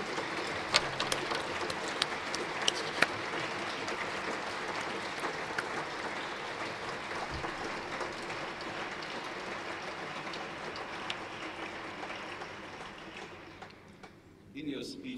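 Audience applauding, an even patter of many clapping hands that fades away near the end.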